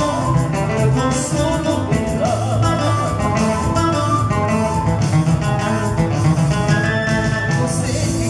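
Ayacucho huayno played live by a guitar band: acoustic guitar, electric guitar and electric bass, with a man singing.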